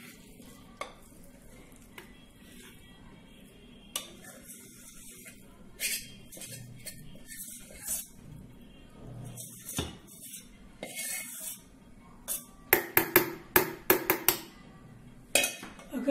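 A steel spoon scraping and knocking against a steel bowl and a steel mixer-grinder jar as thick soaked semolina is scraped in. There are scattered scrapes and clinks, then a quick run of sharp metallic taps near the end as the spoon is knocked clean on the rim.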